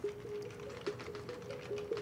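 Background music starts: an electronic synth note pulsing in short repeated beats at a steady pitch, with faint clicking from a computer keyboard.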